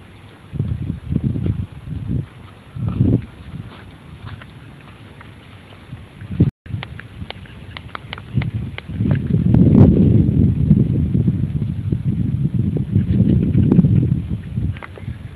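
Gusty wind buffeting the camera microphone: a few short gusts at first, then a stronger, longer gust for the last five seconds or so.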